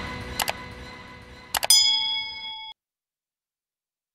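Outro sound effects for a subscribe-button animation: the tail of a low boom fades out, two quick mouse-click sounds come about half a second in, and two more clicks at about a second and a half lead straight into a bright bell-like notification ding that cuts off suddenly near three seconds.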